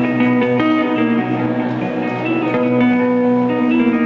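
Two electric guitars played at the same time with two-handed tapping, through amplifiers: a quick run of ringing notes over a held low note.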